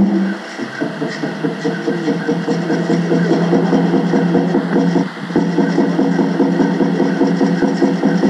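Native American Church peyote song: a water drum beaten in a fast, even pulse of about four to five beats a second, with a man singing over it.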